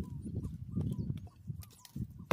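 Pickaxe digging into dry field soil around a tree stump: a few dull thuds and scrapes of loosened earth.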